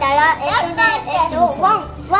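High-pitched young child's voice making wordless sounds, with other voices.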